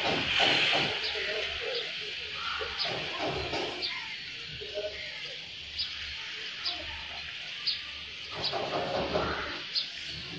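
Outdoor street ambience with faint voices, and a bird giving short high chirps roughly once a second.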